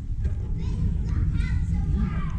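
Background voices, one of them high and child-like, over a steady low rumble.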